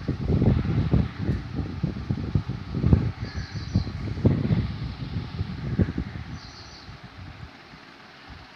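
Wind buffeting the phone's microphone in an irregular low rumble that dies down near the end, with a faint high chirp twice, about three seconds apart.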